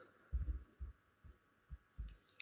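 A few faint, irregular low thumps over quiet room tone.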